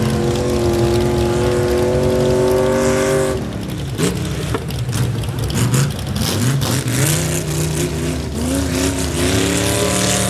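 Pickup truck's engine at high revs, the note climbing steadily for about three seconds, then dropping off suddenly and revving up and down repeatedly as the truck is driven hard around a dirt course.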